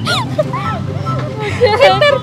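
Voices of several people talking over crowd chatter, with a louder drawn-out voice near the end and a steady low hum underneath.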